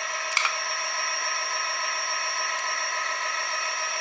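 A 36 V, 500 W planetary-geared e-bike hub motor spinning unloaded at a steady speed, giving a steady whine made of several fixed tones. A slight gear grinding is normal for its internal planetary gears. There is one short click about half a second in.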